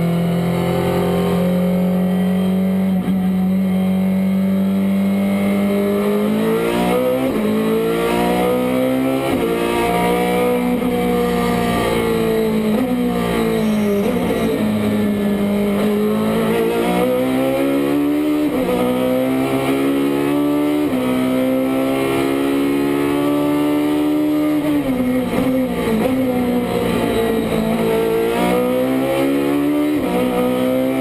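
Ferrari GT race car's V8 engine heard from inside the cockpit at speed on track. The revs repeatedly climb through the gears, drop quickly at each gear change and fall away under braking before rising again.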